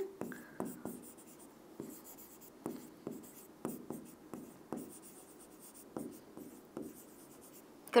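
A pen writing by hand on a board: a series of short, quiet strokes and taps at irregular intervals.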